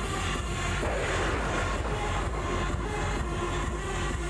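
Background music with a steady beat, with a sport motorcycle engine revving over it that swells about a second in and fades a second or so later.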